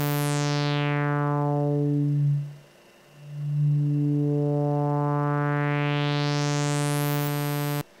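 Sawtooth oscillator note played through a Synthesizers.com Q150 transistor ladder filter with the resonance turned high, its cutoff swept by hand. A sharp resonant peak glides down through the harmonics until the note almost closes off, then rises again over the same steady pitch. The note stops suddenly just before the end.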